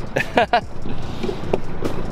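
A man's laughter in the first half-second, then the steady rumbling noise of a motorized wooden river canoe under way.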